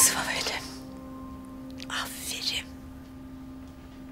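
Two short breathy, whisper-like sounds from a person, one at the start and one about two seconds later, over a faint, steady held musical tone.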